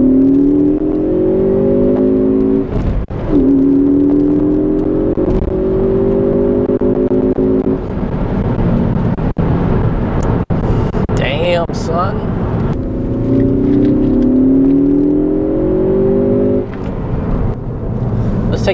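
Ford Focus ST's turbocharged four-cylinder engine, heard from inside the cabin under hard acceleration. Its note climbs, drops at an upshift about three seconds in and climbs again for several seconds. After a steadier stretch it rises once more near the end.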